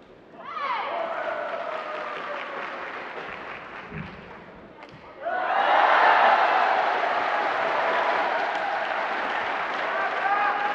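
Arena crowd cheering, shouting and clapping after a point in a badminton match. The noise fades over the first few seconds, then swells louder from about five seconds in and stays up.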